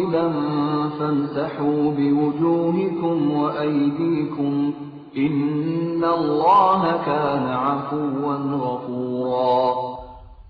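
A male reciter chanting the Qur'an in Arabic in the melodic murattal style, in two long sustained phrases with a short pause about halfway through.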